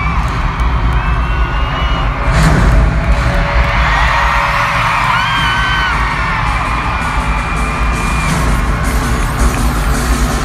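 Arena concert crowd screaming and cheering over loud intro music with heavy bass, and a booming hit about two and a half seconds in. Single high-pitched screams rise above the crowd now and then.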